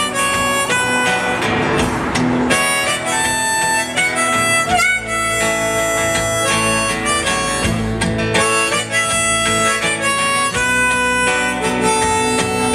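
Harmonica solo of held, changing notes over a strummed acoustic guitar, played live.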